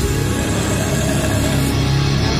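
A metal band with violin playing live through a loud PA: a violin over a dense, steady wall of distorted guitar, bass and drums.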